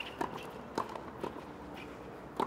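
Tennis ball struck back and forth in a quick doubles rally on a hard court: a string of short, sharp pops, about one every quarter to half second.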